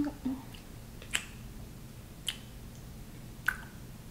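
Three short, wet lip smacks of kisses on a forehead, a little over a second apart.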